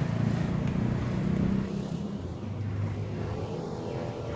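A motor vehicle engine running nearby: a low, steady rumble that eases off a little about halfway through.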